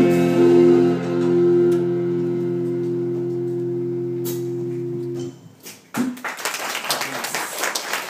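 A rock band's final chord, electric guitars and bass held and ringing out, stopping abruptly about five seconds in. About a second later the audience starts clapping.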